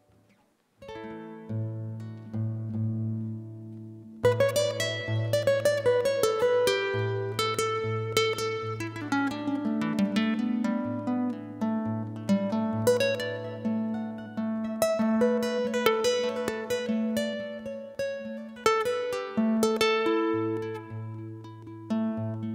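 Acoustic guitar playing the introduction to a folk song, picked notes over ringing bass notes. It starts softly after a second of quiet and becomes fuller and louder about four seconds in.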